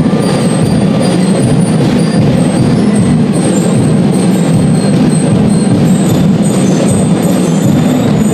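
Drum and lyre band playing loudly: a dense, steady wall of drums with short ringing bell-lyre notes above it.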